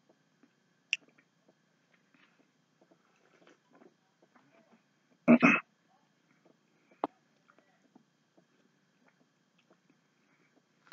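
A man chewing pieces of a cotton do-rag: faint, scattered mouth clicks and chewing. There is a sharp click about a second in and another about seven seconds in, and one short, much louder burst, about half a second long, a little past five seconds.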